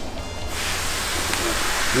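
A steady hiss that starts about half a second in and keeps going.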